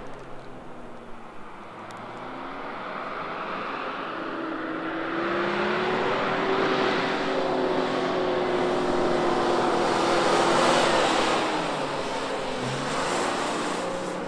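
A 4x4 SUV's engine revving as it drives over sand dunes, its pitch gliding up and down at first, then a steadier drone that grows louder as it comes closer, peaking a couple of seconds before the end.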